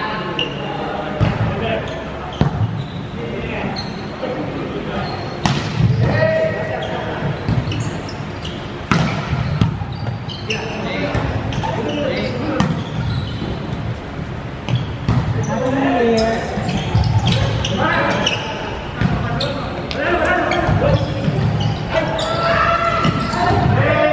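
A volleyball being played in a rally: repeated sharp slaps of hands and forearms on the ball and the ball hitting the wooden court, with players calling out, all echoing in a large sports hall.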